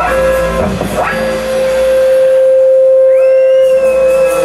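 Electric guitar played live through an amplifier: a few quick picked notes, then one long sustained note held for about three seconds.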